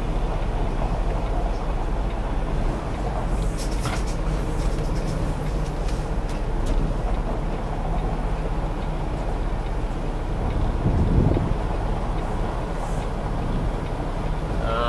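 Semi-truck diesel engine running steadily, heard from inside the cab as a low drone, with a few light clicks about four seconds in and a short low swell about eleven seconds in.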